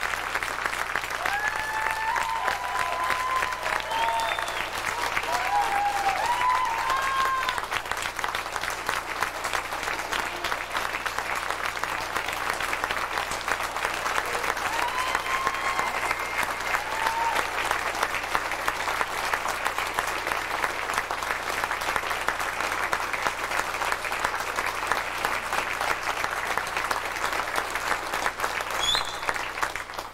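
Audience applauding, with a few cheers rising above the clapping near the start and again about halfway through. The applause cuts off suddenly at the end.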